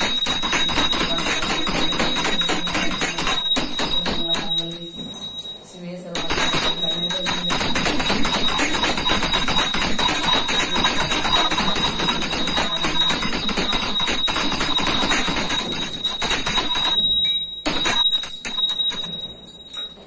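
Puja hand bell rung rapidly and continuously: a high, steady ringing over fast clapper strikes. It breaks off briefly about five seconds in and again near the end.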